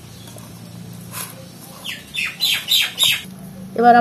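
A bird calls four times in quick succession about two seconds in, each call short and falling in pitch, over a steady low hum.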